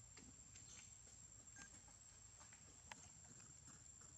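Near silence: faint outdoor background with a steady high-pitched whine and a few soft scattered ticks, one sharper click about three seconds in.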